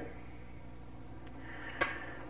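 Quiet steady electrical hum on an old analog recording, with one short sharp click near the end.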